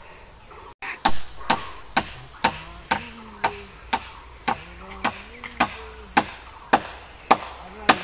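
Sharp strikes repeated at an even pace, about two a second, like wood being chopped or hammered, over a steady high insect hiss.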